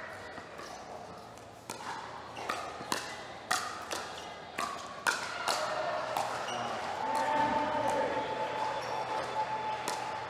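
Pickleball paddles hitting a plastic ball in a fast rally, sharp pops about every half second. In the last few seconds they give way to crowd voices, with one drawn-out call.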